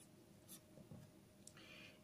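Faint scratching of a pen writing on paper: a few short strokes, then a slightly longer scratch near the end.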